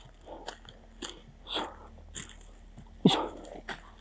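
Footsteps crunching through dry leaf litter on a steep forest path, roughly two steps a second, uneven in strength.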